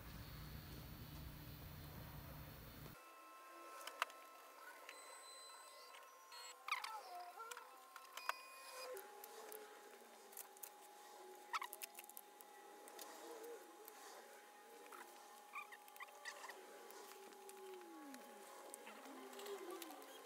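Faint whine of a Prusa i3 MK3 3D printer's stepper motors, the pitch sliding up and down as the axes speed up and slow, over a steady faint tone. Scattered light clicks are heard throughout.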